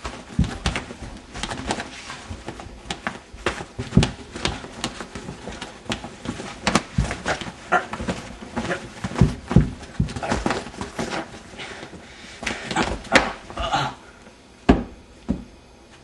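Hand puppets in a mock fight: a rapid, irregular run of thumps, knocks and scuffles as the fabric puppets bash against each other and nearby surfaces.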